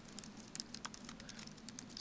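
Someone typing on a computer keyboard: a quick, irregular run of faint key clicks.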